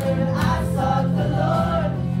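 A live worship band: several singers singing a Christian worship song together over keyboard and guitar accompaniment, with steady sustained chords underneath.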